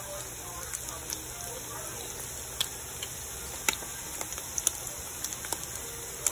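Slices of Spam frying in hot oil in a pan: a steady sizzle with sharp crackling pops scattered through it. The loudest pops come a little past the middle.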